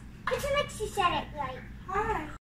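A young child talking in a high voice, the words unclear.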